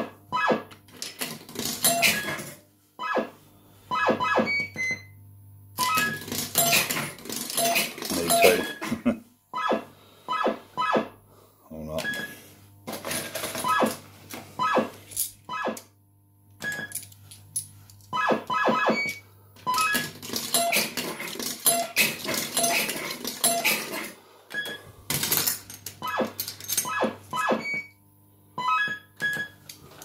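Bell-Fruit Two Step fruit machine in play: runs of electronic beeps and short synthesized tunes, in several bursts with gaps between, as its stepper-motor reels spin and stop, over a steady low hum.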